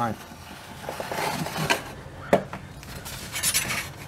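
Utility knife blade scraping as it scores aluminum sheet along a metal straightedge: two scoring strokes, with a sharp knock between them.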